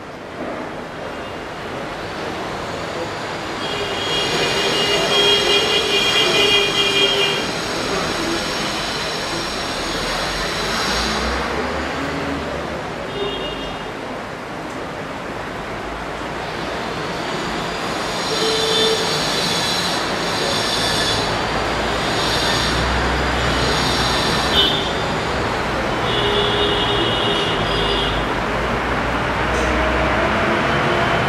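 A train passing, its wheels squealing: a rumbling noise that builds and stays loud, with high steady squeals that start and stop several times over it.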